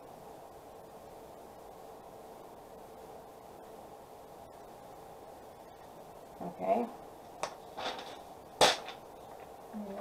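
Faint steady room hum, then three sharp clicks and taps in the second half, the last the loudest, as the small embossing-powder jar and the folded paper used to pour powder back into it are handled and set down on the craft table.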